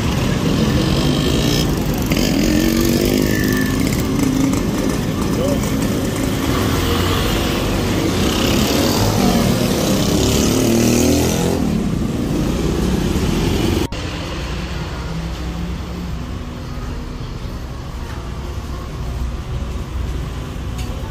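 Busy street traffic dominated by small motorcycles passing close by, their engines rising and falling in pitch, with voices in the background. About 14 s in, the sound drops abruptly to a quieter steady street background.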